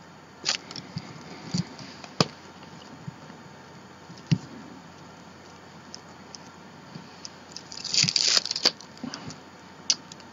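Hand-stamping an art journal page with a rubber stamp: a few light taps and clicks, then a brief rustle of paper and handling about eight seconds in.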